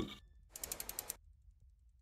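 Logo-animation sound effect: a quick run of about six short clicks, starting about half a second in and lasting about half a second, as the logo settles.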